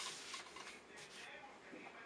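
Faint rustling of paper sheets and a cardboard box being slid and handled on a tabletop by gloved hands.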